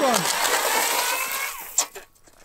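Cordless electric ice auger running with its auger in the ice hole, a steady motor whine that sinks slowly in pitch under load, then cuts off about a second and a half in, followed by a sharp click.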